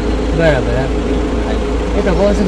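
Car engine idling steadily, a constant low hum, with a man's voice briefly over it about half a second in.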